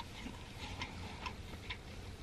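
A person chewing a mouthful of food with the mouth closed: faint, soft wet clicks about twice a second.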